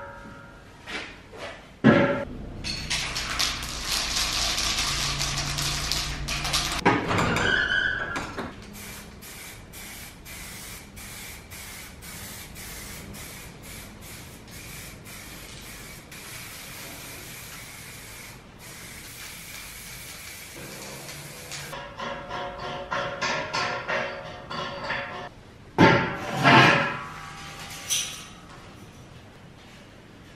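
Aerosol spray-paint can hissing in a long run of short sprays as steel is painted, with music playing. A louder noisy stretch comes early and a few loud bursts come near the end.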